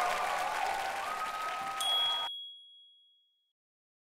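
Audience applauding and cheering, which cuts off abruptly a little over two seconds in. Just before the cut a bright electronic ding sounds, and its high ring fades out over the next second or so.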